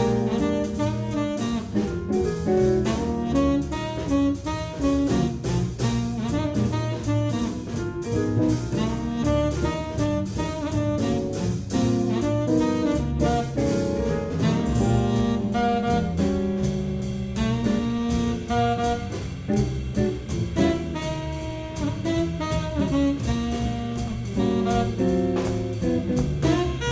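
Live jazz band playing a blues: a tenor saxophone carries the line over double bass, archtop guitar and a drum kit.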